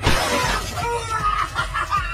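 Breaking-glass sound effect: a sudden loud shatter at the start that dies away within about half a second, followed by music.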